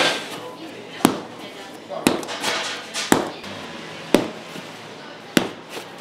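Lean bread dough being lifted and slapped down onto a floured wooden worktable and folded over, the slap-and-fold hand-kneading that stretches and oxygenates the dough. Six sharp slaps come about once a second.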